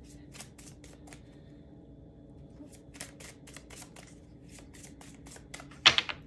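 Tarot cards being shuffled by hand: a run of quick, light card clicks and flicks, with one much louder sharp snap of the cards just before the end.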